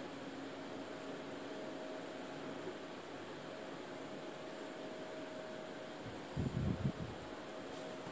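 Quiet steady room hum and hiss, with a short run of low thumps about six and a half seconds in.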